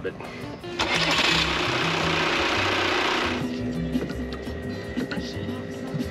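Marine diesel engine starting up and running, briefly warmed so the old oil pumps out more easily before an oil change. A loud rush of noise lasts for about two and a half seconds after a second in, then settles to a quieter steady running sound.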